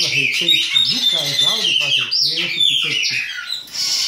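Chopi blackbirds (pássaro-preto) calling in a rapid, continuous string of sliding high notes while the aggressive male chases the female.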